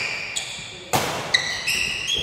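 Badminton racket striking the shuttlecock once, about halfway through, the hit ringing briefly in the hall. Short high squeaks of players' court shoes on the wooden floor come before and after it.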